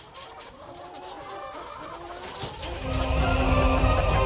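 A flock of chickens clucking, many short calls overlapping as the birds gather; a louder, lower sound with a held tone comes in near the end.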